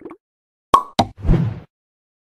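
Animated-title sound effects: two short pops about a quarter of a second apart, then a brief low thump.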